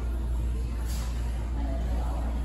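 A steady low rumble that runs without change, with a faint, indistinct jumble of sound above it.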